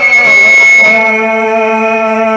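Live amplified stage music: long held melodic notes that waver and glide slowly, from a singer or a reed instrument, with a brief burst of hiss in the first second.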